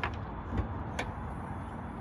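A Jeep SUV's hood being unlatched and lifted: a sharp click, a dull knock about half a second later, then another click, over a steady low rumble.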